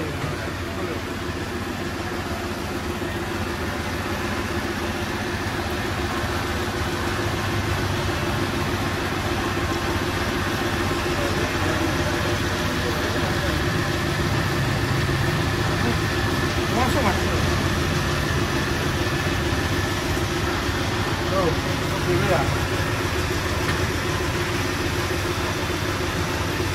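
Steady motor drone from workshop machinery running without a break.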